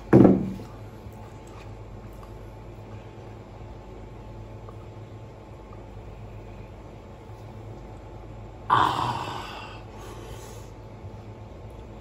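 A man eating and drinking. A short, loud vocal sound with falling pitch comes right at the start, and a long noisy slurp comes about nine seconds in as he drinks from a small bowl.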